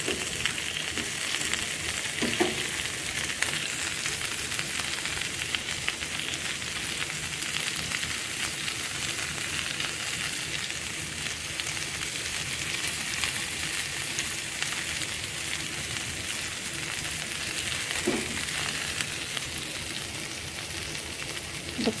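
Beef and bell-pepper kebab skewers sizzling steadily on a hot ridged grill pan.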